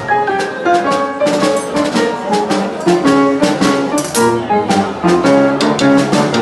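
Upright piano playing boogie-woogie blues, with a snare drum and cymbal keeping a steady beat.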